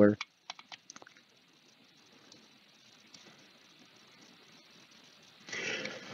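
A handful of light, separate computer mouse clicks in the first second or so, then faint room noise, and a short intake of breath just before the end.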